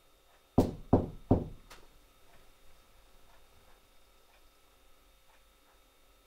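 A hand knocking three times in quick succession on a hard surface. A faint steady ticking follows, about twice a second.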